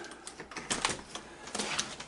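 Several sharp clicks and rattles of a patio door's knob and latch being worked as the door is opened.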